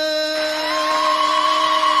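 Moroccan Amazigh folk song: a man's voice holds one long note. About a third of a second in, crowd cheering and clapping rise under it, and a high voice joins with a held cry.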